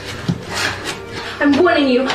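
A soft knock and a few scuffs, then about one and a half seconds in a raised, strained voice begins.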